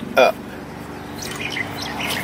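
A steady low hum with faint bird chirps.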